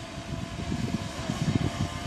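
Small camera drone's propellers whining steadily, a few held tones that waver slightly, over an uneven low rumble.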